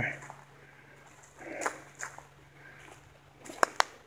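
Quiet footsteps through dry leaf litter on a forest floor: soft rustles, then a couple of sharp clicks near the end.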